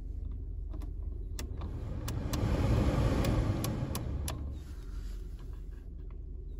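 A Renault Clio's heater control knob clicking through its detents as it is turned, about a dozen clicks. The ventilation fan's air rush rises about two seconds in and eases off again after four seconds, over the steady low hum of the idling engine.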